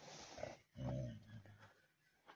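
Tibetan mastiff giving a short, deep growl about a second in, after a little faint scuffing.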